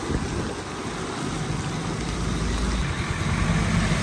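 Heavy rain falling, with a vehicle's engine idling close by as a low steady hum that grows firmer in the second half.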